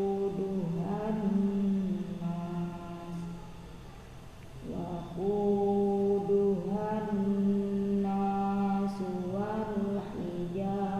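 A man reciting the Quran in a slow, melodic tilawah style, holding long drawn-out notes. His voice drops away for a breath about three and a half seconds in and picks up again about a second later.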